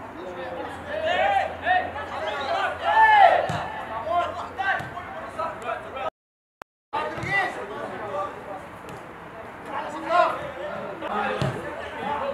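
Several voices shouting short calls across a football pitch during play, players and the bench calling out, with a few dull thuds of the ball being kicked. The sound cuts out for under a second a little past the middle.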